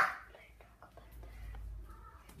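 A quiet stretch holding a faint whispered voice, a few soft ticks and a low handling rumble.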